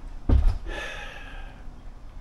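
A man's sigh: a short puff of breath that hits the microphone about a third of a second in, followed by a longer hissing exhale of about a second.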